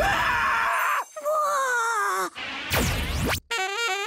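Cartoon sound effects over background music: a burst of noise, then a wobbly falling tone, a swoosh about three seconds in, and a warbling tone near the end.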